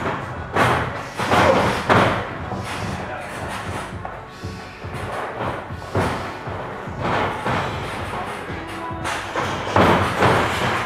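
Thuds of wrestlers' feet and bodies on the boards of a wrestling ring, several of them, the loudest in the first two seconds and again near the end as one wrestler is taken down, over background music.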